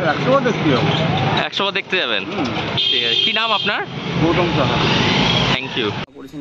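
Busy street noise, with a motor vehicle passing close under several overlapping voices talking. The noise cuts off abruptly near the end.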